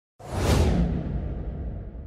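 Whoosh sound effect of a logo intro: a sudden swoosh with a low rumble under it, starting a moment in. It is loudest in its first half-second, and its hiss then fades away while the rumble carries on.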